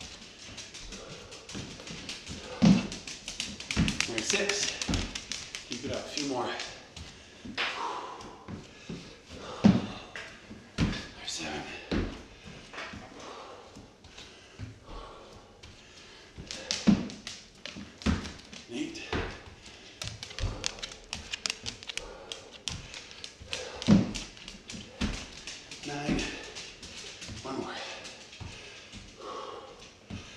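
Feet and hands thudding and tapping on a hardwood floor during gorilla burpees, with a heavier landing thud about every seven seconds from each jump, and hard breathing between.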